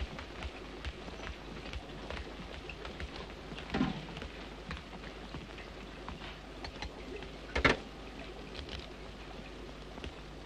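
Steady hiss and faint crackle of an early-1930s optical film soundtrack, broken by a soft knock about four seconds in and a sharper one just before eight seconds.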